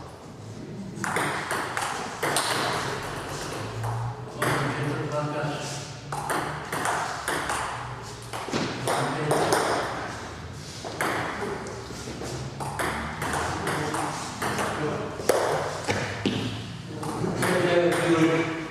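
Table tennis ball clicking off the bats and table during play, with people talking.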